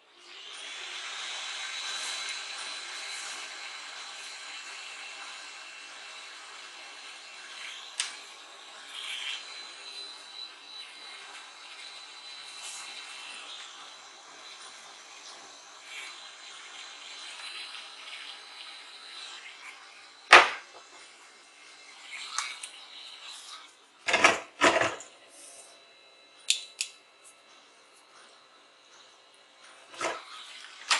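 Hot air gun running with a steady high fan whine while shrinking heat-shrink tubing over a soldered wire joint, switched on at the start and gradually quieter over about twenty seconds. Then a sharp knock, and a few more knocks and clicks a few seconds later, as things are handled on the bench.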